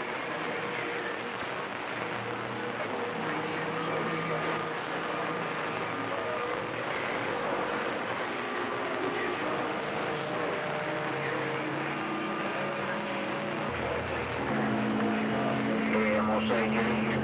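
CB radio receiver hissing with band static on an open channel between skip transmissions, with faint whistling tones drifting in and out. Near the end a stronger station keys up, adding a steady low tone and louder noise.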